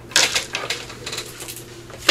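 Hands rummaging through paper ephemera and small craft pieces on a tabletop: a sharp click about a quarter second in, then lighter scattered taps and paper rustles.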